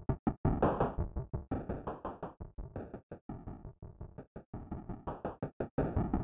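Live-coded TidalCycles electronic music: a fast run of short synthesized noise hits, several a second, each dying away quickly. The hits grow softer in the middle and louder again near the end.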